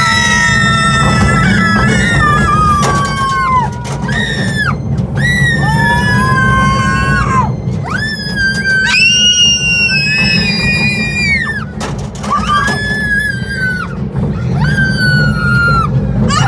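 Riders screaming on a roller coaster: several high-pitched voices, each holding long screams that rise and fall and break off every second or two, sometimes overlapping. Underneath runs a steady low rumble from the coaster train running on its track.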